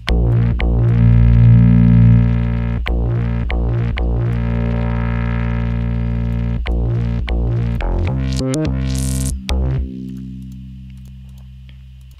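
Ableton Operator FM synth patch, fed through a Glue Compressor and EQ Eight, playing a sustained low note with a rich stack of harmonics. The note is retriggered several times, and its tone shifts as the EQ bands are moved, growing brighter in the upper mids. Near the end a brief bright sweep rises high, then the note fades out.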